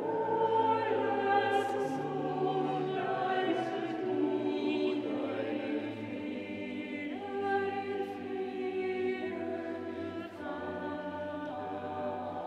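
Small mixed choir of men's and women's voices singing in harmony, holding chords that change every second or two.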